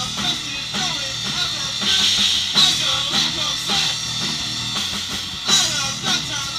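A rock band playing at full volume: a drum kit driving a steady beat of kick and snare strikes with cymbal crashes, over electric guitar and bass guitar.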